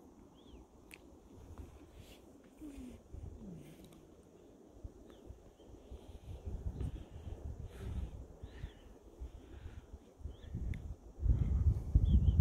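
Wind buffeting the microphone in uneven gusts, building louder near the end, with a few faint high chirps.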